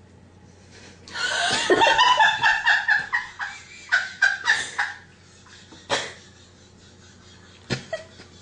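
A woman laughing: a long run of quick, high-pitched laughing pulses starting about a second in and dying away around the middle, followed by a couple of sharp clicks.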